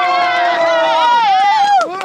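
Football supporters chanting a long, drawn-out "davai!" held on one note, the pitch wavering about a second in before the shout breaks off near the end.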